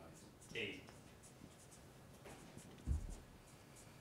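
Felt-tip marker writing on flip-chart paper: faint short scratching strokes as a word is finished. A brief faint voice sounds about half a second in, and a low thump near three seconds.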